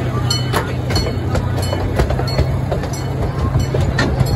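Small amusement-park train riding along, with a steady low engine drone and sharp clicks and knocks from the wheels and cars every few tenths of a second.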